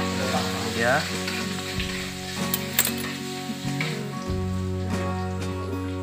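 Background music with long held notes that change in steps, over a steady crackling hiss.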